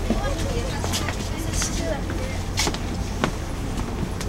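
Outdoor night ambience: a steady low rumble, faint distant voices in the first second and again near the middle, and a few sharp clicks.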